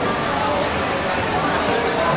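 Background voices of people talking, indistinct, over a steady wash of ambient noise.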